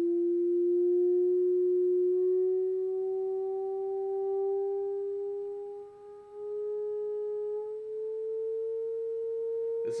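A pure sine tone from a phone frequency-generator app, played through a speaker into a Rubens' tube, sliding slowly upward in pitch from about 330 to about 460 hertz. It briefly fades about six seconds in. The tone sets up a standing wave in the gas inside the tube.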